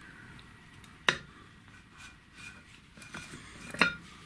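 Tinted glass front plate of a toy infinity mirror being handled with a cloth and set back into its plastic frame: a sharp click about a second in and a couple more clicks near the end, with soft handling noise between.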